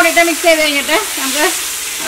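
Chicken and onions in masala sizzling in a hot wok as a spatula stirs and tosses them, a steady frying hiss throughout. A voice speaks over it during the first second and a half.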